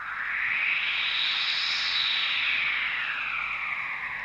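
Opening of the song: a synthesizer sweep, a smooth wash of hiss with no distinct notes, rising in pitch to a peak about halfway through and then falling back.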